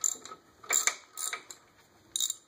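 Hand ratchet wrench clicking in three short bursts as it turns a bolt driven against the back of a Ford Model A flywheel to press the flywheel off its pins.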